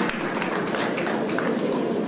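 Audience applauding: a dense, steady patter of hand claps.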